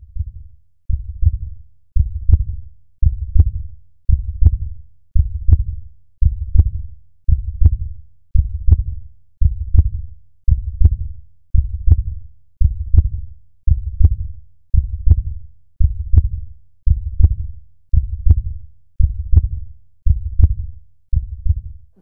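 A slow, steady heartbeat sound effect: deep, loud thumps at about one beat a second, evenly paced throughout.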